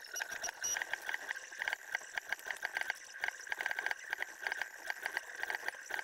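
Bachin Draw pen plotter's stepper motors running as it draws, a steady whine under fast, irregular clicking.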